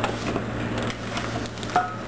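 Paper flour bag rustling and a metal measuring cup scraping as a cup of bread flour is scooped, over a steady low hum.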